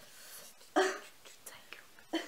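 A woman's quiet, half-whispered speech, with one short louder word about three-quarters of a second in.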